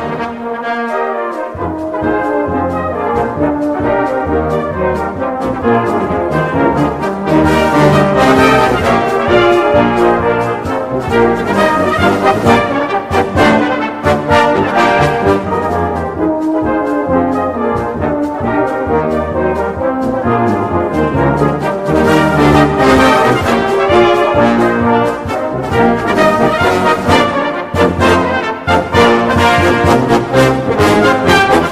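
Salvation Army brass band playing a march: cornets, horns, trombones and low brass together in full band texture, with the bass line dropping out briefly in the first couple of seconds.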